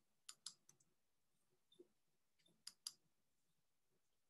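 Faint computer mouse clicks: two quick pairs of clicks, one near the start and one near the end, as slides are selected in a presentation program.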